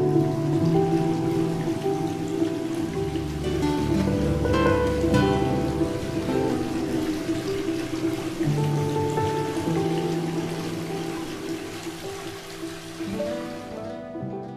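Instrumental music on nylon-string acoustic guitar over sustained chords, with a steady hiss beneath; it fades out near the end.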